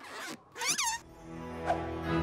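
A short swish of a cartoon sound effect, then a brief high-pitched sound that falls in pitch. From about a second in, background music comes in and swells.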